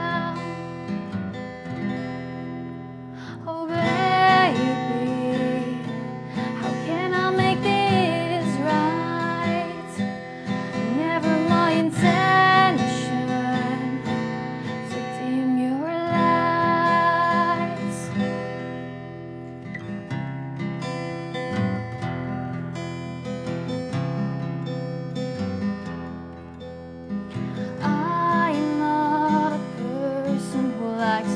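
A woman singing a slow song to her own acoustic guitar accompaniment, the guitar played with the fingers. Her sung phrases come and go over the guitar, which carries on alone through a quieter stretch in the latter half before the voice returns near the end.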